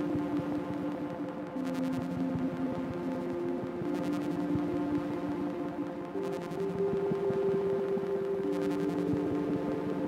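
Sunbox and Make Noise Strega analog synthesizers playing a slow generative ambient passage: sustained tones over a drone, moving from one pitch to another every second or two, with brief airy shimmers up high every few seconds.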